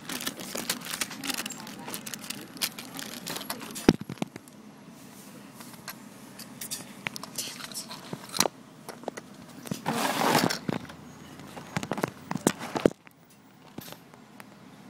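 Handling noise of plastic toy packaging: bags crinkling and small plastic parts clicking and scraping. There is a sharp click about four seconds in and a louder rustle around ten seconds in, then it goes quiet near the end.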